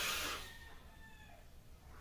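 A short, breathy rush of air as a mechanical vape mod is drawn on through its wide-open rebuildable dripping atomizer, fading within about half a second, followed by faint thin tones.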